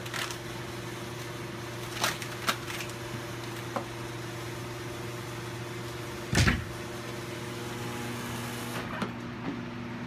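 Steady electrical hum of lab equipment with a few light clicks of handling. About six and a half seconds in, a wooden overhead cabinet door shuts with a single thump, the loudest sound.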